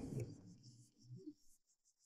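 Near silence in a pause in conversation: the last of a spoken line fades at the start, a faint low sound comes about a second in, then the track drops to dead silence.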